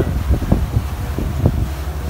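Wind buffeting the microphone in irregular gusts over the steady low rumble of a moving passenger boat.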